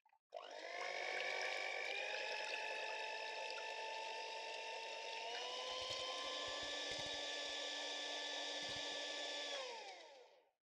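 Electric hand mixer beating egg whites in a glass bowl: a steady motor whine that steps up in pitch twice as the speed is raised, then winds down just before the end. A few low knocks come in the second half.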